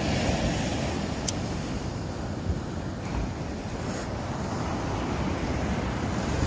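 Steady sound of ocean surf and wind rumbling on a phone microphone, with a single sharp click about a second in.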